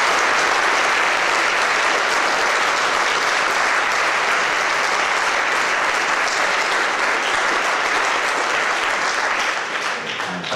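A large audience applauding, dense and steady, easing off slightly near the end.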